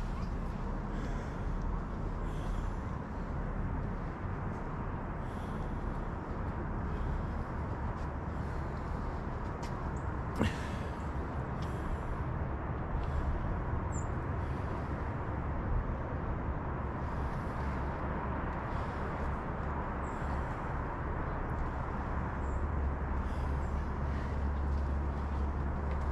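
Outdoor ambience: a steady low rumble and hiss, a little stronger near the end, with one sharp click about ten seconds in.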